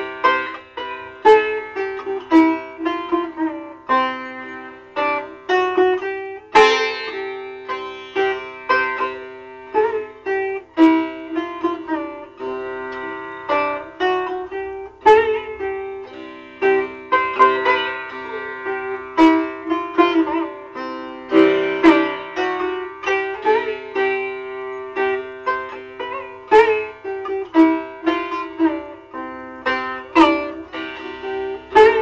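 Sitar playing the gat of raag Shyam Kalyan in teen taal at a quicker lay: a continuous run of sharply plucked strokes, several a second, over a steady ringing tone from the strings.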